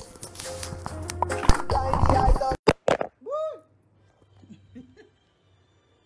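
Music playing, overlaid with rustling and knocks as the phone streaming it is handled and its microphone covered by a hand. A bit over two and a half seconds in, the sound cuts out abruptly in a few sharp clicks, followed by a short voiced exclamation and then near silence.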